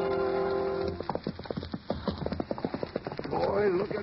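A sustained music-bridge chord ends about a second in, followed by the clip-clop of horse hoofbeats, an uneven run of knocks from several horses at a walk. A voice comes in near the end.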